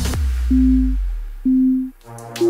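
Workout countdown timer beeping: two steady low beeps, each about half a second long, one second apart, counting down the last seconds of an exercise interval. The electronic backing music cuts out early on, leaving only a fading bass note under the beeps.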